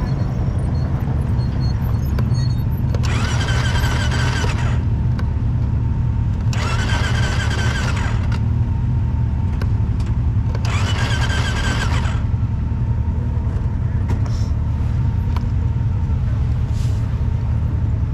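ATV electric starter cranking three times, about one and a half seconds each, without the engine catching: the quad will not start, and the cause is not known. A steady low rumble runs underneath.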